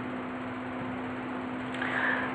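Steady background hiss with one even low hum running under it: the room and microphone noise of a home recording.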